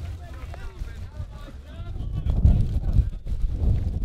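Wind buffeting the camera microphone in a low, gusty rumble that swells past the middle, with faint distant voices of players calling out on the ballfield.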